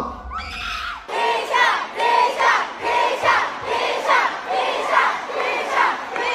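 Large concert audience screaming and cheering, many voices together in repeated rising-and-falling shouts; a low rumble under it stops about a second in.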